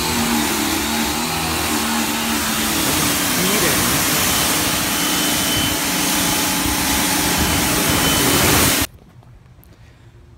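Pressure washer spraying a jet of water onto a car's front bumper and hood, a loud steady hiss of water with a faint motor hum underneath. It cuts off suddenly about nine seconds in as the trigger is let go.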